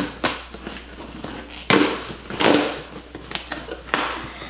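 A package being opened by hand: several short bursts of tearing and crinkling packaging, the loudest a little under two seconds in and again about half a second later.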